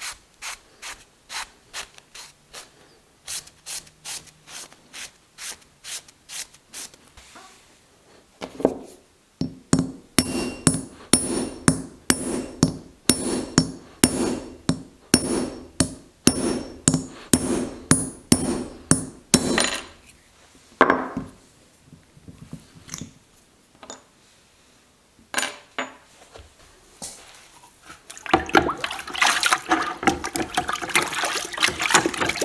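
A run of light strokes, about two a second, as a copper sledge hammer head is rubbed and cleaned with a rag. Then a fast series of sharp hammer blows on a steel punch held against the copper head, about two and a half a second for roughly ten seconds, each ringing. Near the end, water sloshing in a bucket as the head is washed.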